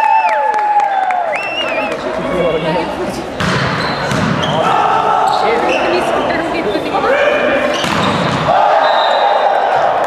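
Indoor volleyball rally on a hardwood gym floor: players' long shouted calls, sneakers squeaking and the ball being struck in a few sharp hits, all echoing in the hall.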